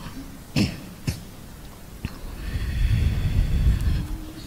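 A man coughing or clearing his throat twice in quick succession into a close microphone, then a louder low rumbling noise on the microphone over the last second and a half.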